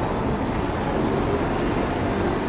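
Steady outdoor city background noise: a continuous hum of distant traffic, with no distinct events.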